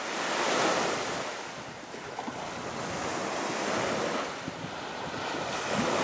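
Sea waves washing onto a shore, the surf swelling and ebbing several times.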